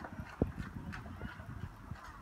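Footsteps of a person jogging in sneakers on a concrete path: a run of light, uneven taps and scuffs.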